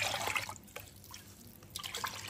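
A ladle pours chicken broth mixed with red chili oil into an enamel mug, splashing and dripping. It is loudest in the first half second, then fainter, with a few small splashes near the end.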